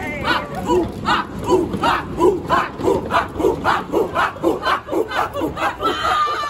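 A small group of young people chanting a short shout together over and over in rhythm, about two to three shouts a second, quickening slightly toward the end.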